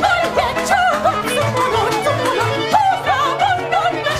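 A woman singing an operetta song into a microphone with wide vibrato, over a small band with violin and clarinet keeping a steady beat.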